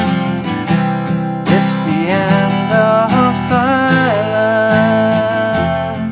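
Steel-string acoustic guitar strummed in chords while a man sings a melody over it. He holds one long note over the last two seconds as the playing rings out.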